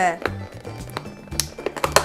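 Background music with a few sharp plastic clicks near the end, from hands squeezing and prying at a hard plastic toy capsule that stays shut because it is taped closed.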